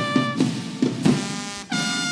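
A brass-and-drum band playing live: trumpets hold long notes over drum beats. The horns break off about half a second in while the drums carry on, then come back with a new held chord near the end.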